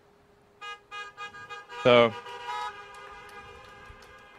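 Several car horns honking together: a few short blasts, then held horn tones that slowly fade. This is an audience sitting in parked cars applauding by honking.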